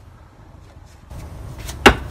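A single sharp, loud strike near the end as a short wooden practice sword (bokken) is cut down onto a cloth-covered target dummy, over a low rushing noise that builds about a second in.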